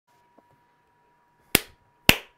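A single sharp crack about one and a half seconds in, like a clap or smack, dying away quickly over a faint steady whine.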